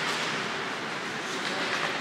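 Steady hiss and rumble of an ice hockey game in an indoor rink: skate blades scraping on the ice over the arena's background noise.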